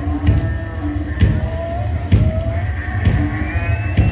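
Live heavy rock band playing: electric guitars and bass over drums, the drum strokes falling about once a second.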